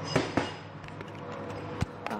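A few sharp knocks and clicks, two close together in the first half-second and one near the end, over a steady low hum.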